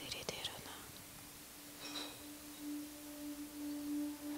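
A stage keyboard holding one soft, steady sustained note as a quiet pad, with a faint whisper at the microphone about two seconds in.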